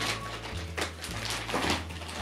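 Plastic treat packaging crinkling in a few short rustles as a dog tears at it, over background music with a steady bass line.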